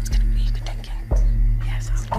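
Several people whispering to one another as they confer, over a low, steady droning background music.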